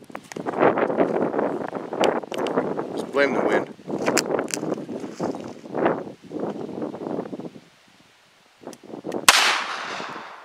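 A single .38 Special round fired from a Ruger GP100 revolver about nine seconds in: one sharp shot with a short ringing tail. Before it there are indistinct voices and a few light clicks.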